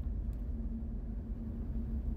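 Steady engine and road rumble heard from inside the cab of a moving vehicle, with a low, even hum under it.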